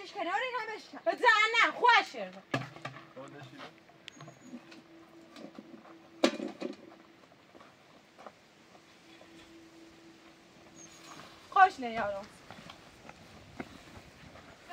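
Voices speaking loudly in the first two seconds and again briefly about twelve seconds in. In between is a quieter stretch with faint scattered knocks and one sharper knock about six seconds in.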